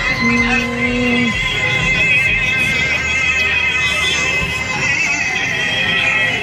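Music with a wavering high melody running throughout, and a steady low tone that holds for about a second near the start.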